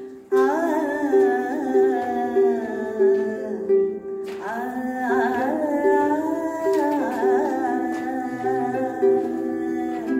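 A woman singing while playing a soprano mahogany ukulele fingerstyle, both ringing with the echo of a rock cave. The voice stops briefly about four seconds in while the plucked notes carry on, then comes back in.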